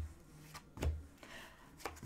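Tarot cards being handled and laid on a table: a few soft taps and thumps, about a second apart.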